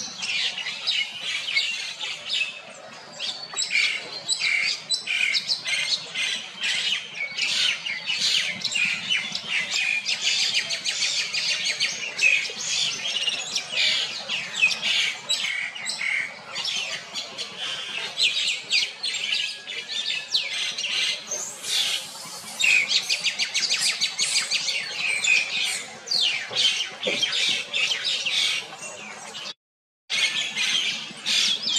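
Many short, high-pitched animal calls, chirps and squawks overlapping in a dense, continuous chatter, with a brief break near the end.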